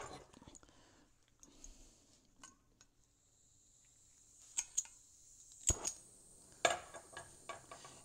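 Hand-held propane torch being lit. Gas begins to hiss about halfway through, with a few sharp clicks as it catches, the loudest a little later, then a steady soft hiss of the burning flame. Before that come faint handling noises.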